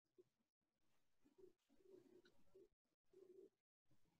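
Near silence: faint room tone over a video call, dropping out to dead silence several times.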